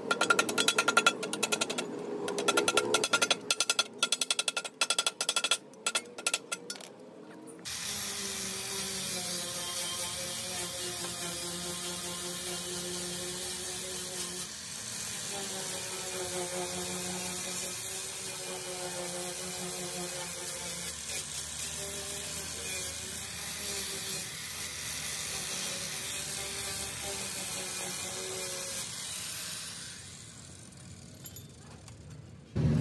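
A hammer strikes a steel strip on a metal block in quick repeated blows that ring, shaping it into a curve. About eight seconds in, an electric angle grinder starts and runs steadily on the car's lower sill metal, its pitch dipping now and then under load, and cuts off near the end.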